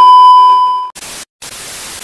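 TV test-pattern sound effect: a loud, steady high-pitched beep for just under a second, cut off abruptly by a hiss of TV static that runs on after a brief break.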